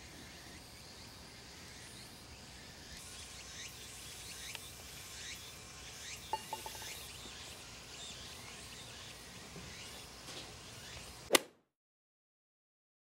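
Faint outdoor ambience on a golf green with repeated short chirps. About six seconds in, a few light clicks come as the putter strikes the ball. Near the end there is one sharp, much louder click, and then the sound cuts off abruptly.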